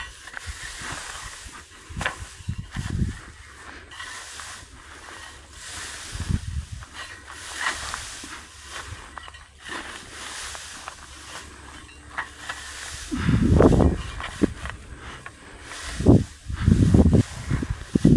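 Dry cut grass rustling and crackling as a pitchfork rakes and lifts it, with several louder low rumbling bursts, the biggest near the end.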